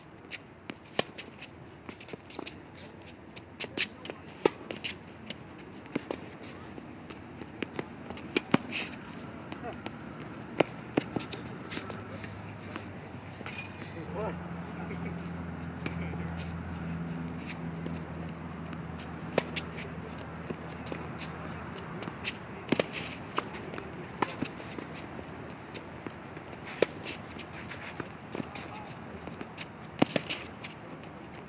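Tennis rally on a hard court: sharp pops of racket strings striking the ball and the ball bouncing, every second or two, with sneakers scuffing on the court between shots. A low steady hum comes in for about ten seconds in the middle.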